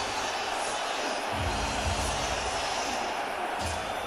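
Steady crowd noise of an ice hockey arena, with a few dull low thumps about a second and a half in and again near the end.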